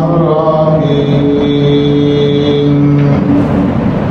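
A man's voice chanting, drawing out one long steady note for about two seconds in the middle.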